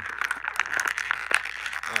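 Clear plastic toy packaging crinkling and crackling as it is handled, a quick run of small irregular crackles.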